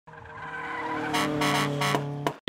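Car sound effect over a title card: a steady engine-like note fades in, joined about a second in by three quick tyre screeches.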